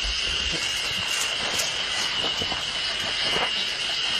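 A steady, high-pitched chorus of insects buzzing in summer woodland, with a few faint scuffing footsteps on a dirt trail.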